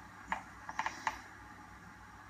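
Faint footsteps crunching on dry leaf litter and twigs, a few short crackles in the first second or so.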